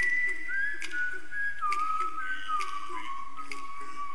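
A single whistle-like tone, held long and stepping down in pitch from high to lower, over a faint crackle with soft clicks about once a second.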